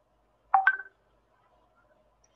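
A short electronic two-note beep, the second note higher, lasting well under half a second.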